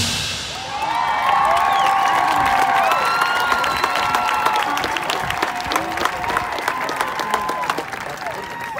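Stadium crowd applauding and cheering, with whoops and shouts over dense clapping, easing slightly toward the end.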